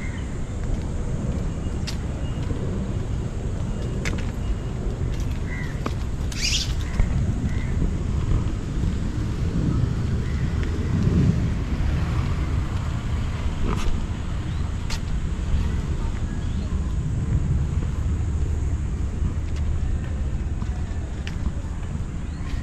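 Outdoor street ambience beside a road: a steady low rumble, with a few faint short clicks and a brief high-pitched sound about six seconds in.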